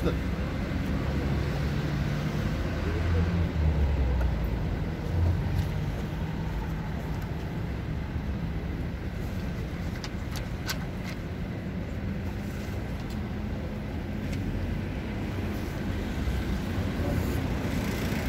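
Street traffic: a low engine rumble from passing road vehicles, stronger in the first few seconds, with a few faint clicks around the middle.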